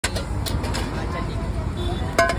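A few sharp metal clinks from steel utensils handled at a street-stall gas stove in the first second, over a steady low rumble of street noise with faint voices.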